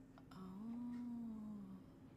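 A woman humming one long, thoughtful "mmm" with her mouth closed, its pitch rising slightly and falling back.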